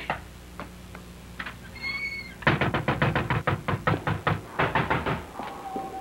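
Knocking on a door: a few scattered taps, then a rapid run of sharp knocks, about six a second for nearly three seconds. A brief high tone sounds just before the run.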